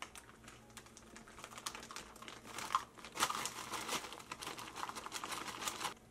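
Plastic bag of light brown sugar crinkling as it is handled, a rapid run of crackles that grows denser and louder about halfway through.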